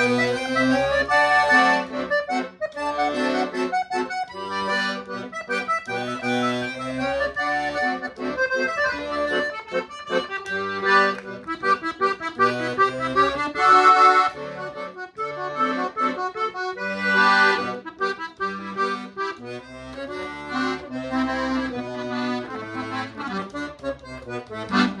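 Paolo Soprani piano accordion played: a melody on the treble keyboard over bass notes and chords from the buttons. The instrument is freshly tuned and overhauled, and it plays in tune.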